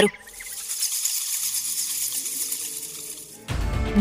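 A soundtrack interlude: a high, hissing shimmer with faint low notes underneath. Near the end a low, deep music bed comes in.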